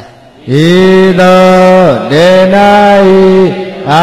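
A Buddhist monk chanting Pali text in a single male voice, in long held tones. Each phrase slides down in pitch at its end; the chanting begins about half a second in, after a brief pause.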